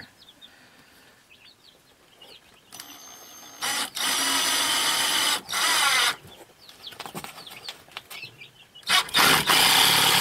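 Cordless drill/driver driving screws into 2x4 lumber in loud runs: a short one about three seconds in, a longer one from about four to six seconds, and another starting about nine seconds in.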